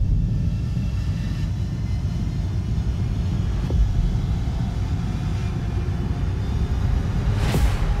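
Deep, steady bass rumble of a film-trailer score, with a low hit about four seconds in and a whoosh near the end.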